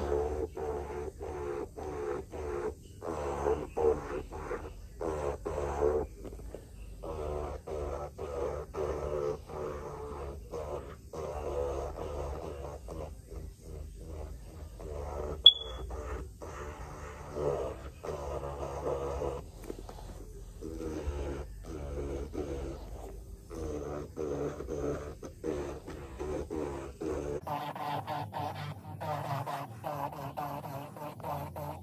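Electric nail drill with a cuticle bit running in light passes around the cuticles, its pitch and level wavering as it touches the nail. A single sharp click about halfway through.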